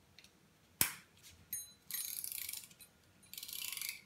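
Scissors snipping jute twine with one sharp click about a second in, then a brief metallic ring as the steel scissors are set down on the wooden table. Two short bursts of fast rattling follow, each about half a second long.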